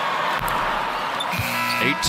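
Basketball bouncing on a hardwood court under the hoop after a made free throw, over steady arena crowd noise.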